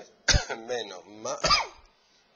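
A man coughing twice, a sudden loud cough about a quarter second in and another about a second and a half in, each trailing into a short burst of voice.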